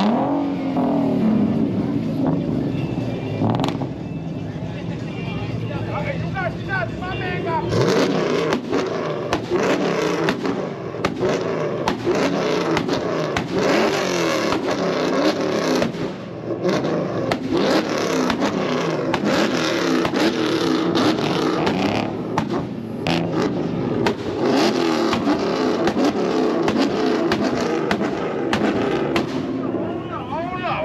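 Muscle-car engines held on a two-step launch limiter, revving hard against the limiter with rapid popping and banging from the exhaust. The bangs come thicker and louder about eight seconds in, over crowd voices.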